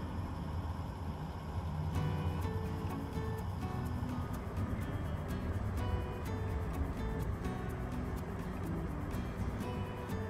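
Background music whose melody notes and light ticking beat come in about two seconds in, over a steady low rumble of the moving train.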